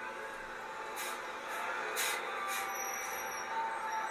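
Tour bus engine running, with its air brakes hissing about one and two seconds in as the bus comes to a stop.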